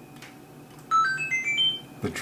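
A short electronic jingle of about six quick beeping notes, stepping up in pitch overall, lasting about a second and starting about a second in, like a phone ringtone or alert tone.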